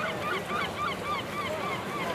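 Birds calling: a quick run of short, arched calls, several a second, over the background hubbub of a crowd.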